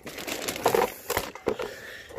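Handling noise: rustling with a few short knocks and clatters as a metal watering can and an object put into it are moved about.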